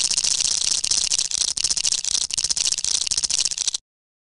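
Logo-intro sound effect: a dense, rapid clicking rattle that cuts off abruptly shortly before the end.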